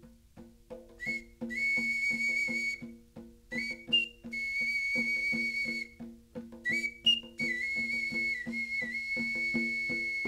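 Handmade clay whistle blown in long, steady high notes lasting one to three seconds each, with brief higher chirps between them. It enters about a second in, over a hand drum beaten in an even rhythm of about four strokes a second.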